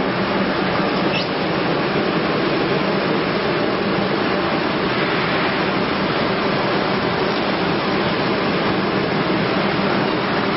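Heat-shrink wrapping machine running: a steady whir with a low hum, and a brief click about a second in.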